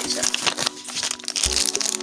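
Paper checklist leaflet and a pink plastic Num Noms blind bag crinkling as they are handled, with a run of quick irregular crackles.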